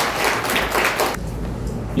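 Audience applause: many people clapping, dying away a little over a second in.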